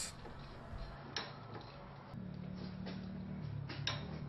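Wrench clicking while tightening the camshaft sprocket bolts to torque: a sharp click about a second in, a couple of clicks near the end, and faint ticks between, over a low steady hum.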